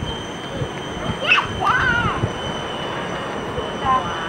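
Steady, fairly loud rumble of a distant jet airliner approaching to land, under a thin steady high whine, with a brief voice-like call about a second in.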